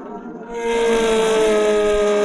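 Sound effect of a speeding car, starting about half a second in: a loud, steady squeal of tyres over engine noise, sliding slightly down in pitch.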